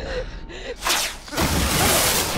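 A person gasping in fright, with a sharp intake of breath about a second in, followed by a loud rush of hissing noise.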